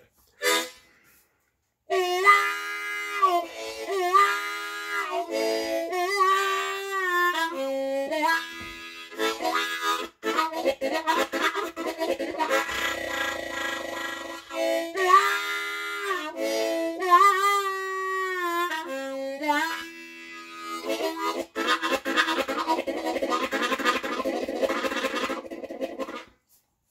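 A new Hohner Special 20 ten-hole diatonic harmonica in A, played with cupped hands. After a short pause the notes start about two seconds in, with many bent notes and chugging train-style rhythm passages, and stop just before the end. It is played to warm up and break in the fresh reeds.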